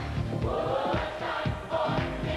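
A vocal group singing gospel music together in harmony over a band, with a steady beat.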